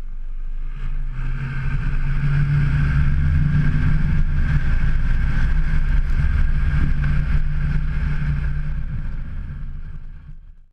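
Valtra N101 tractor's diesel engine running under load as it drives past pushing a V-plow through snow, growing louder over the first two seconds and fading toward the end, with a steady hiss over the engine note.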